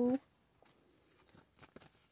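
Faint rustling and light ticks of paper cards and a clear plastic sleeve being handled, mostly near the end.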